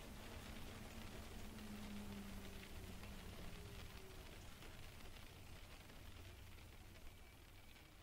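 Faint steady rain, a soft even hiss, with a faint low hum in the first half; the rain fades down near the end.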